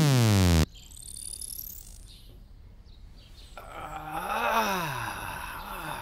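Music slides down in pitch and cuts out in the first second, leaving a quiet stretch with a faint high whistle rising in pitch. From about the middle on, a man groans in a long drawn-out voice that rises and falls in pitch, then fades.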